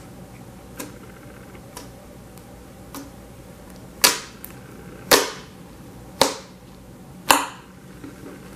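White slime being folded and pressed by hand, trapped air popping out of it in sharp clicks. A few faint clicks come first, then four loud pops about a second apart in the second half.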